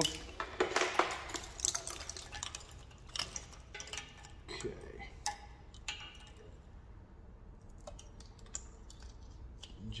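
Wiring harness being handled and untangled: plastic connectors and the braided loom clatter and rustle, with a quick run of light clicks in the first few seconds that thins out to scattered clicks as the connectors are laid onto the engine.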